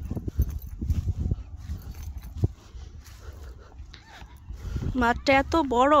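Low wind rumble on a phone microphone with scattered light thumps. Near the end, a raised, high-pitched voice starts speaking loudly close to the microphone.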